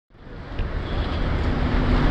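Steady outdoor rumble and hiss, heaviest in the low end, fading in over the first half second.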